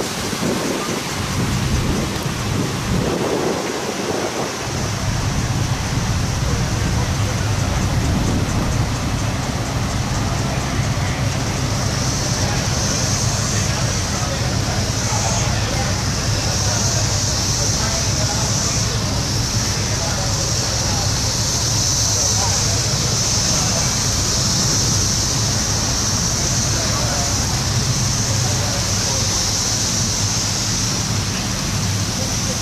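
Steady outdoor noise: a low even hum under a constant hiss, with a high thin steady buzz joining about twelve seconds in.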